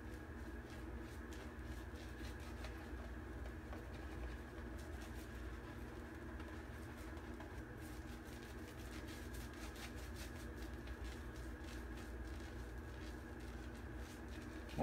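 Shaving brush scrubbing lather onto the face: soft, scratchy brush strokes repeating against skin and stubble. A steady low hum runs underneath.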